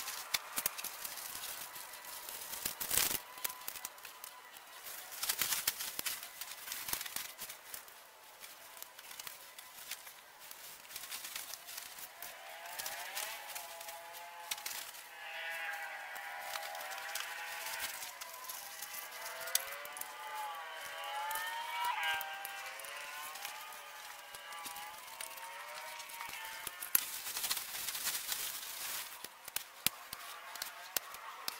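Tent fabric rustling and crinkling, with clicks and scrapes from the poles, as a small dome tent is unfolded and pitched. Through the middle a wavering tune is heard for about a dozen seconds.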